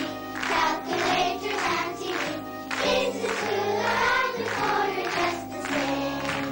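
A children's choir singing, with held low notes sounding underneath the voices.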